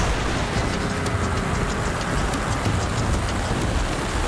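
Heavy tropical rainstorm: a steady downpour with wind rumbling, starting abruptly.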